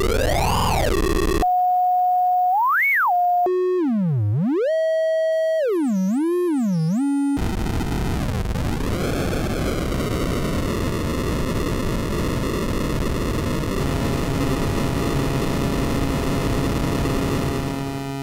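Freshly built Mutable Instruments Edges 8-bit chiptune oscillator module playing as its knobs are turned. A buzzy tone sweeps down and up in pitch, then a pure tone gives one quick upward blip, then another buzzy tone swoops down and up several times. From about seven seconds in, a noisy buzz dips in pitch and settles to a steady drone.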